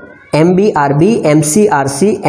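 Speech only: a person talking in a lecturing tone.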